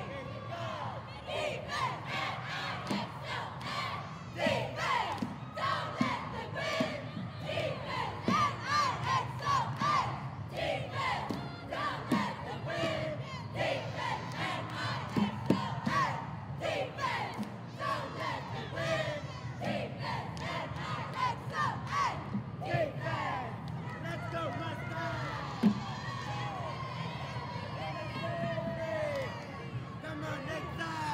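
A cheerleading squad shouting a defense cheer in unison, with crowd yelling, and many sharp hits in time through it.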